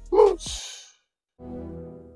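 A short voiced sound trailing off into a breathy sigh, then a moment of silence, then logo-animation music starting about two-thirds of the way in.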